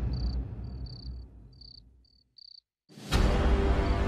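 Crickets chirping in short high chirps, a few a second, over low background music that fades away. About three seconds in, a sudden loud music sting cuts in.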